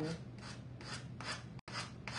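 Sandpaper rubbed in short downward strokes over the edge of a small wooden pallet, about three strokes a second, sanding off the overhanging decoupaged napkin.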